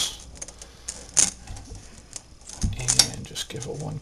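Handling of a wall switch and electrical tape: scattered light clicks and small metallic rattles, with sharper clicks about a second in and near three seconds.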